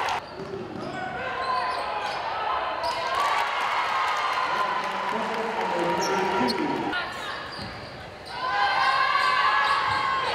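A basketball dribbled on a hardwood gym floor, bouncing in a steady series, with voices of players and spectators echoing in the large gym; the voices grow louder near the end.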